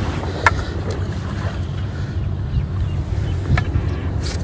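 Small rescue boat's motor running with a steady low rumble on floodwater, with a single short click about half a second in.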